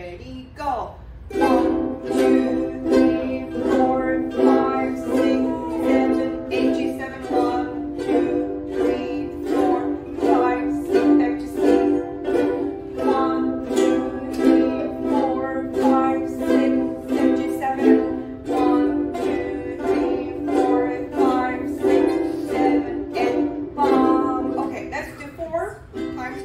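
A group of ukuleles strumming chords together in a steady beat, cued as eight strums on a C chord, with the chord changing every few seconds in a C and G7 chord drill.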